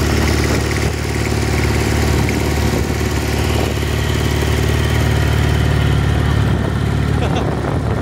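Engine of a small open ride-on vehicle running steadily as it drives across grass, with a broad rushing noise of wind and movement over it.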